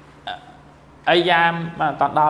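A man speaking into a handheld microphone: a short syllable about a quarter second in, then continuous speech from about one second in.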